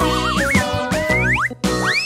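Children's cartoon background music with cartoon sound effects over it: a wobbling, rising whistle-like glide, then several quick upward sweeps, with a short break about one and a half seconds in.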